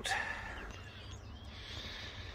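Quiet steady low rumble of background noise with a faint thin hum, and a short breath at the very start.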